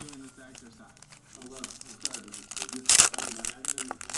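Foil wrapper of a trading-card pack crinkling and tearing open. There is a run of small crackles and a loud rip about three seconds in.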